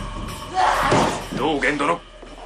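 Speech: a voice delivering Japanese film dialogue, with the pitch moving up and down.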